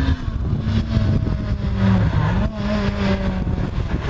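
Renault Clio R3 rally car's four-cylinder engine running hard at high revs as the car approaches at speed, the pitch dipping briefly a little past halfway and then holding steady again.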